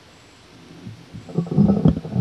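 A near-silent pause in room tone, then from about a second in a run of loud, low, irregular rumbling noises close to the microphone.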